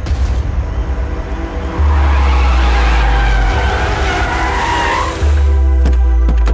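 Film soundtrack: a deep, steady bass drone, with a loud noisy swell that rises and fades over the middle few seconds and a thin high whistle near its end.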